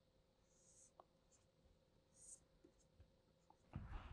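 Near silence with faint stylus strokes on a drawing tablet: two brief, soft scratches over a low steady hum.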